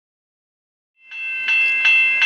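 Railway level-crossing warning bell ringing in a steady repeated pattern of about three strikes a second, starting suddenly about a second in.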